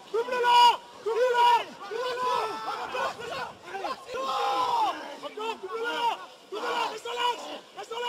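Men shouting short, high-pitched calls over and over, about two a second, while the forwards drive in a scrum and maul.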